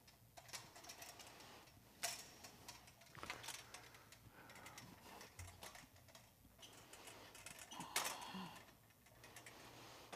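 Faint, scattered clicks and knocks of a person handling equipment and moving about, with a sharp click about two seconds in and a louder knock about eight seconds in.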